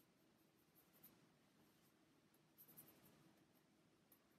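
Near silence with the faint scratch of a paintbrush dabbing acrylic paint onto a birch wood panel, with a few small strokes about a second in and again near the three-second mark.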